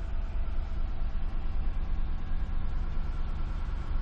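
Steady low rumble of a 2015 Lexus GX 460's 4.6-litre V8 idling, heard from inside the closed cabin, with a faint steady hum over it.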